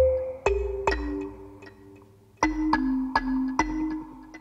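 A demo loop of two layered marimba/xylophone-type mallet sounds playing a phrase of struck, ringing notes over low thuds. The phrase dies away about halfway through, then starts again. One sound is being ducked around 300 Hz by a sidechain unmasking plugin as its amount is turned up, which is a subtle effect.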